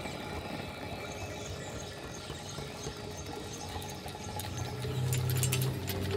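A sound-design soundscape of steady, water-like hiss with faint high chirps repeating a few times a second. After about four seconds a low hum and a steady tone come in, and crackling clicks follow near the end.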